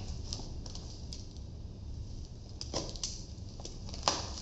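Packing tape on a cardboard box being cut and worked loose by hand: a few scattered short scrapes and clicks, with a steady low hum underneath.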